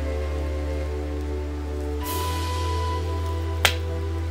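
Background music of held, sustained chords over a low bass, the chord shifting about halfway through. A single sharp click sounds near the end.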